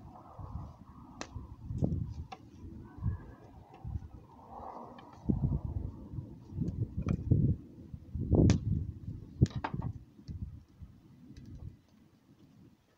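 Knife cutting a fish into pieces on a board: irregular knocks and dull thuds, with a few sharp clicks, the loudest about eight and a half and nine and a half seconds in.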